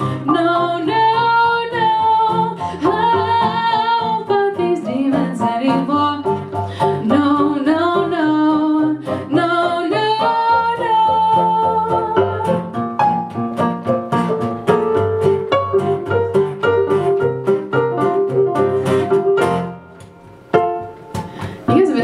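Live song by a female singer with acoustic guitar and electric keyboard, her voice wavering with vibrato over the strummed chords. The music drops away near the end as the song finishes.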